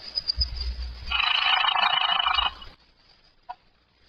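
Telephone bell ringing once for about a second and a half, as a sound effect in an old radio-drama recording, followed by a short click near the end.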